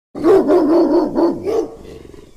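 A dog barking, about five quick barks in a row, dying away near the end.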